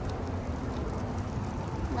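Double stroller's plastic wheels rolling over parking-lot asphalt, a steady low rumble.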